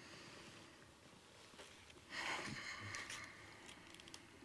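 Faint room tone with one brief, soft rustle about two seconds in, lasting about a second.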